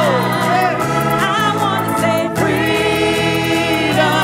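Gospel music: a small group of voices singing in harmony over steady low instrumental backing.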